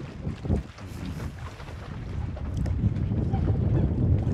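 Wind buffeting an outdoor microphone: a low rumble that grows louder in the second half, with faint voices in the background early on.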